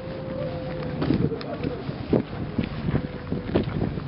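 Wind buffeting the microphone in irregular gusts, over the chatter of a crowd.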